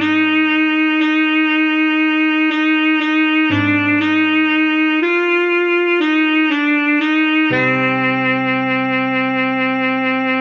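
An alto saxophone plays a simple melody, mostly short repeated notes about two a second, then a long held note near the end. It sounds over a backing accompaniment whose low notes come in about every four seconds.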